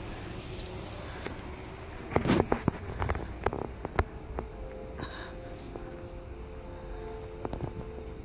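Footsteps and knocks from a handheld phone being carried along the street, irregular sharp clicks bunched in the middle, over a steady low background hum.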